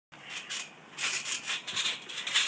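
Trampoline being bounced on: scratchy rubbing and creaking from the mat and springs in uneven rushes about every half second.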